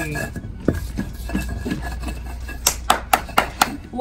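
A hand stone grinding roasted shea nuts on a flat grinding stone, rubbing and scraping, with a quick run of sharp stone-on-stone knocks near the end.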